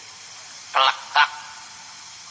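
A man's voice giving two short calls about half a second apart, over steady cassette-tape hiss.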